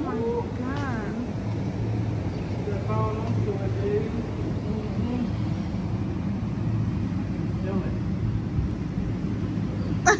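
Steady outdoor ambience: a low rumble and hiss throughout, with a few faint, distant voices now and then.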